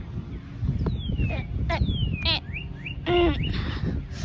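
Birds chirping outdoors: a few short whistled notes, two of them falling in pitch, over a steady low rumble on the microphone.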